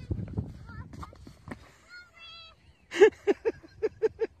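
Low rumble, then a short wavering vocal sound about two seconds in. From about three seconds in comes a fast run of loud vocal bursts, about five a second.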